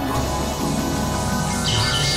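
Experimental electronic synthesizer music: a dense drone of many sustained low tones. Near the end a high, chirp-like two-note pulse starts, repeating about three times a second.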